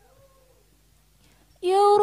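An unaccompanied solo voice singing the opening of an Al-Banjari sholawat. It starts with faint, soft humming slides, and about one and a half seconds in it comes in loud on a long held note.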